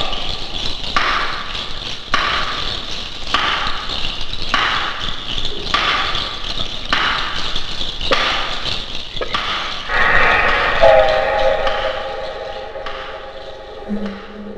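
Trailer soundtrack: a regular pulse of rattling beats about once a second, then, from about ten seconds in, a held chord of several steady tones that fades away near the end.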